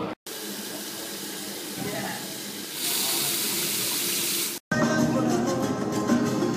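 A steady rushing hiss like running water, growing louder about halfway through and cut off abruptly. Then music with guitar and singing, played from a television.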